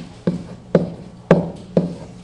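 A pen knocking against an interactive whiteboard surface as digits are handwritten: five sharp knocks in two seconds, each with a brief ring.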